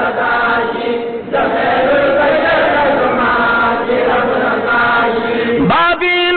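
A group of men chanting a Pashto devotional refrain together, many voices blended into one dense sound. Near the end a single male voice takes over, singing with sliding, ornamented pitch.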